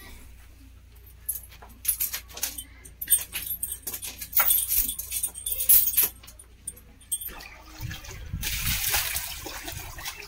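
Iron chain clinking and rattling in short, sharp clatters as a water buffalo is led on it. From about eight seconds in, water sloshes and splashes in a stone trough as the buffalo drinks.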